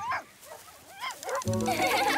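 Cartoon puppy whimpering in a few short cries that bend up and down in pitch. About one and a half seconds in, background music with a bass line comes back in.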